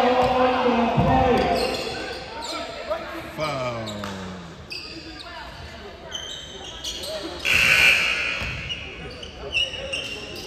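Basketball game sounds in a gym hall: loud shouting voices in the first second, then a basketball bouncing on the hardwood court amid players' and spectators' voices. A brief loud burst of noise comes about eight seconds in.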